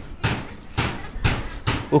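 Steady drum beat of background music, about three hits a second.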